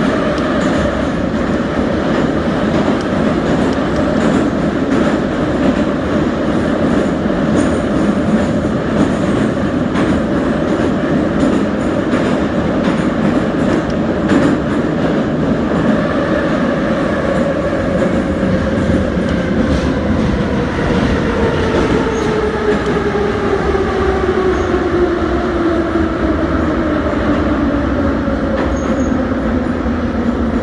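Moscow Metro train running through a tunnel, heard from inside the carriage: steady wheel and rolling noise with a motor whine. In the second half the whine falls steadily in pitch as the train brakes for the station.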